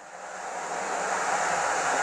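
A hiss of noise that swells in loudness over about a second and a half, then holds steady.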